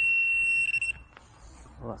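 A handheld metal-detecting pinpointer probe sounding a continuous high-pitched tone that breaks into a few quick beeps and cuts off just under a second in. The tone signals a metal target close to the probe tip in the dug soil, here the buried coin.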